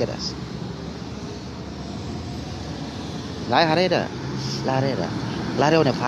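A steady low background rumble, like distant traffic, with a man's voice breaking in with a few short vocal sounds from about halfway through.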